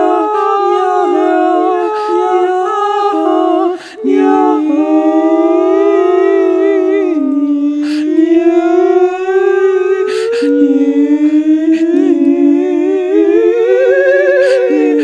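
Three voices singing without words in overlapping, long-held notes that slide slowly up and down, some with a wavering vibrato. There is a brief break about four seconds in.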